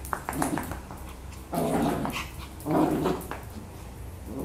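Toy poodle puppy growling in play: two short, rough growls a little over a second apart, after a few light clicks near the start.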